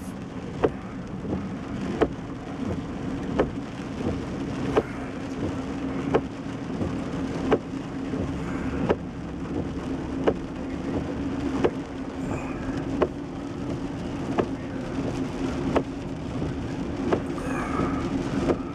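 Car moving slowly in the rain, heard from inside the cabin: a steady low engine and road hum, with a sharp tick about every second and a half.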